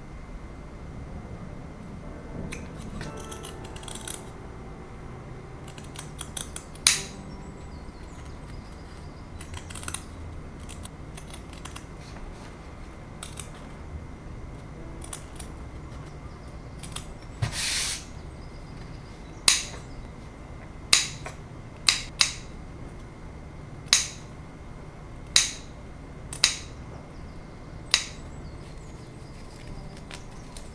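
Fabric scissors snipping through linen in a series of short, sharp cuts, sparse at first and then coming every second or so in the second half, with one longer cut about two-thirds of the way in. The cuts trim a toy's seam allowance and notch its curves.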